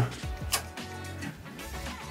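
A single sharp click about half a second in from the relays of a Bodine ELI-S-250 emergency lighting inverter, switching the unit into emergency mode while its test switch is held for commissioning. Soft background music plays throughout.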